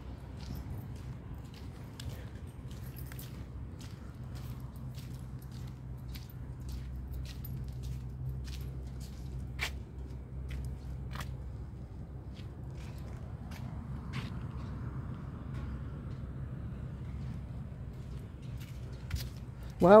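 Footsteps on pavement and handling of the phone while walking, as irregular light clicks over a steady low hum.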